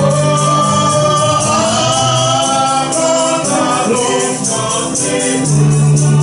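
Gospel singing by a group of voices in chorus, with a man's voice leading through a microphone. A tambourine keeps a steady beat over a low accompaniment.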